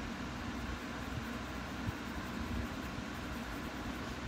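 Steady low hum and hiss of room background noise, with one small tick a little before two seconds in.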